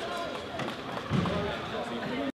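Indistinct chatter of several people talking at once in a large sports hall.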